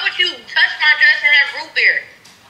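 Speech only: a woman's voice talking, its words not made out.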